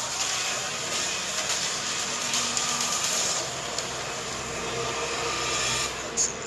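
Action movie-trailer soundtrack: a dense, steady wash of crashing, rumbling sound effects with faint held tones underneath.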